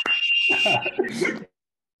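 Several people cheering and shouting over a video call, with a steady high tone running through the first second; the cheering cuts off sharply about one and a half seconds in.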